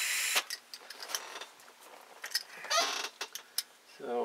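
Light clicks and taps of a small metal carburetor body and its parts being picked up and handled. A short hiss cuts off suddenly just after the start, and another comes about three seconds in.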